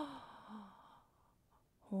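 A woman's sighing vocal sound trails into a breathy exhale lasting about a second, then quiet. Near the end she starts a held, voiced "oh".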